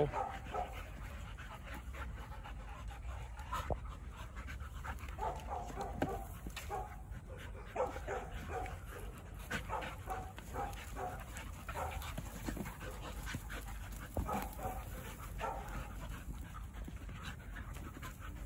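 Dogs wrestling in play, panting, with short scattered vocal sounds every second or so.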